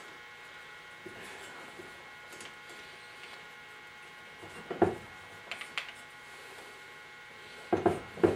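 Corded electric drill turning a hone inside a cast aluminium cylinder head's valve guide: a faint, steady motor whine, with a few short clicks from the tool about five seconds in and again near the end. The guides are being hand-honed to open up tight valve-to-guide clearance.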